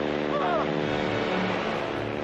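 Small aerobatic stunt plane's propeller engine droning steadily, heard from on board in flight with rushing wind noise. A short yell of a man's voice breaks in about half a second in.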